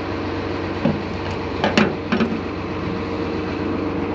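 An engine idling steadily, with a few sharp clicks and knocks of metal parts being handled between about one and two and a half seconds in.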